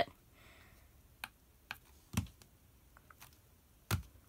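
Hands tapping on the plastic touch pads of a Speed Stacks Stackmat Gen 4 timer: a handful of separate light clicks and taps, one duller thump about halfway, and a sharper click near the end.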